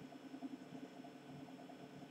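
Quiet room tone: a faint steady hum and hiss with no distinct events.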